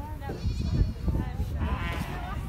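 Beni Guil sheep bleating in a crowded pen: one wavering bleat about half a second in and another near the end, over a background of people's indistinct voices.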